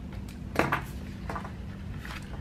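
Desk handling noise from planner supplies: a short, sharp clatter about half a second in and a softer one just after a second, as a sticker sheet is pushed aside and a pen is put down, over a steady low hum.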